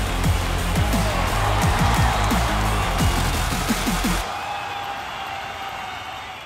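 Short intro theme music with a heavy bass beat and repeated falling low notes, which stops abruptly about four seconds in and leaves a fading tail.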